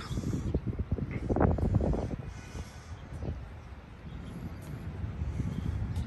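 Low, irregular rumbling of wind buffeting the microphone outdoors, swelling about a second and a half in and easing off in the middle, with a few faint clicks.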